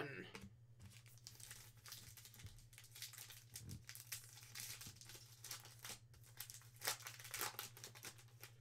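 Foil wrapper of a Panini football card pack being torn open and crinkled by hand: a run of faint crackles, a little louder near the end.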